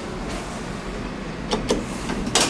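Steady running noise of a 1990 Haushahn passenger lift's car and drive, with two sharp clicks close together near the end.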